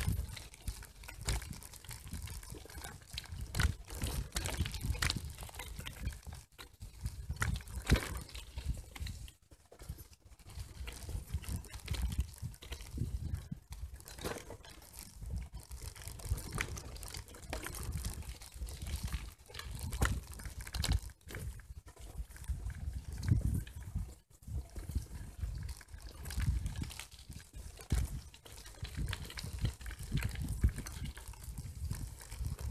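Bicycle rolling along a gravel path: tyres crunching over the stones and the bike rattling in dense, irregular clicks and knocks over a low rumble, with a few brief lulls.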